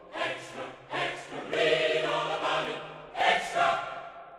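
Short title-card musical jingle sung by a choir of voices over a steady held low note, in phrases that die away at the very end.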